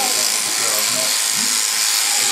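Machine sheep shears buzzing steadily as the handpiece cuts through an Angora goat's mohair fleece, with voices talking over it.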